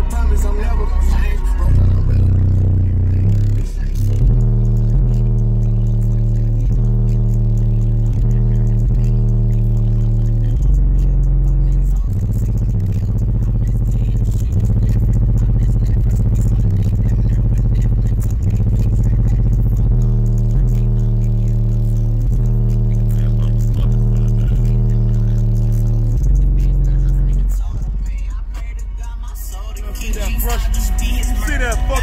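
Rap music played loud through two DB Drive WDX G5 10-inch subwoofers driven by a Rockford Fosgate 1500BDCP amplifier at 2 ohms. Heavy sustained bass notes change pitch every few seconds and dominate the sound, with little treble.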